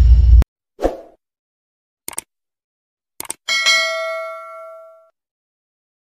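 Subscribe-button animation sound effects: a loud low burst that cuts off about half a second in, a short thud, two pairs of quick clicks, then a notification bell ding of several tones that rings out for about a second and a half.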